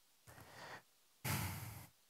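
A man's soft breath, then just after a second in a louder sigh blown out close to a headset microphone.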